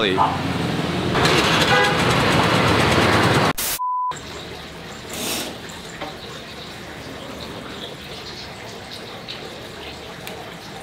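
Busy street traffic noise, cut off about three and a half seconds in by a short steady electronic beep, followed by a much quieter steady background hush.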